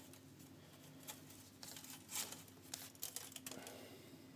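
Faint rustling and scattered light clicks of plastic model-kit sprues being handled and shuffled while searching for a part.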